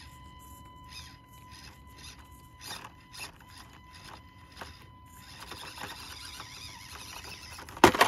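Axial SCX24 micro RC crawler's small electric motor whining faintly while its ProLine Hyrax tires scrabble and scrape on rock in short bursts. Near the end comes a loud clatter as the crawler tumbles off the boulder onto the rocks below.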